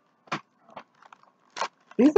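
Handling noise: four or five short crackles and clicks as a plastic-wrapped pack of vacuum cleaner bags is picked up and handled.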